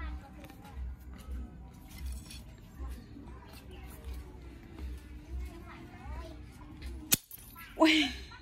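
Toothed half-moon steel spring trap snapping shut once on a stick, a single sharp snap about seven seconds in. The trap is very sensitive and its spring very strong.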